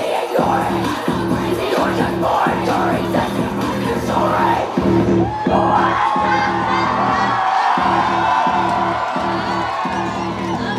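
Live screamo-rap music over a heavy, repeating bass beat, with a female rapper yelling into the mic. About halfway through she holds one long yelled note over the beat.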